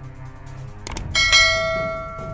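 A short click about a second in, then a bright bell ding with several ringing overtones that fades out slowly: the click-and-notification-bell sound effect of a subscribe-button animation.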